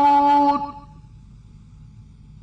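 A male reciter's voice holding one long, steady note of chanted Quran recitation, which ends about half a second in. A low steady background hum and hiss remains.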